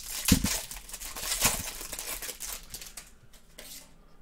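A trading-card pack's plastic wrapper being torn open and crinkled by hand, with a low thud just after the start. The crinkling is loudest about a second and a half in and fades near the end as the cards come out.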